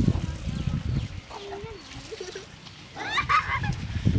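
A chicken squawks briefly about three seconds in, after a softer, lower wavering call near the middle. A low rumble of wind and handling on the microphone runs underneath.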